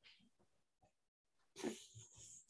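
Near silence: faint room tone over a video call, broken by one brief noisy burst near the end.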